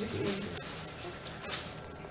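Faint off-microphone voices murmuring in a hall, with two light clicks about half a second and a second and a half in.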